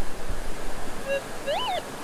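Minelab metal detector giving a target signal: from about a second in, short tones that rise in pitch, hold and fall again as the coil sweeps over a buried metal target, over a steady hiss.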